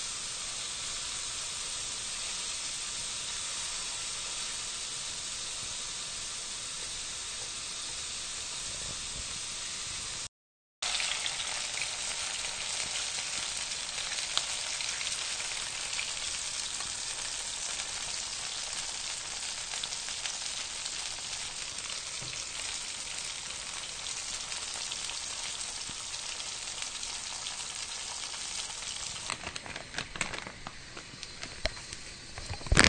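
Karaage chicken pieces deep-frying in a small pot of oil with a lot of water mixed in. The oil gives a dense, steady sizzle with fine crackling as the water boils off. It breaks off for a moment about ten seconds in, then carries on with sharper crackles.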